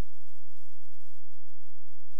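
Electrical hum and hiss with irregular soft low thumps, about five in two seconds. This is the audio line of a Sony DVD player/video cassette recorder sitting on its menu screen with no programme sound.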